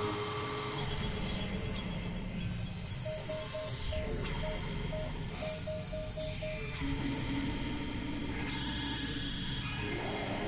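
Experimental electronic noise music from synthesizers: a dense low rumbling drone under high steady tones and a few falling glides, with a run of short, evenly pitched beeps from about three to six and a half seconds in.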